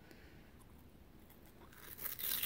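Near silence, with a faint peeling sound near the end as a paper seal is pulled off a jar of thick acrylic paint.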